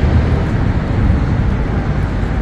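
Steady low rumbling outdoor background noise, with no distinct event standing out.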